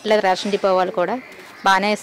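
A woman speaking, with a short pause just over a second in.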